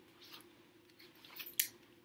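A picture-book page being turned by hand: faint paper rustling, with one short crisp sound a little past halfway.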